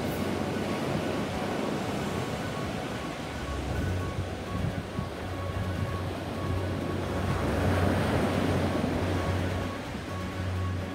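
Sea surf washing onto a sandy beach in a steady wash of noise, with quiet music underneath whose low bass note comes in about three seconds in.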